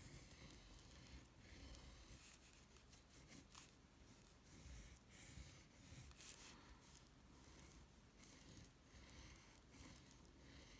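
Faint scratching of a pencil drawing curved strokes on paper, in short irregular strokes.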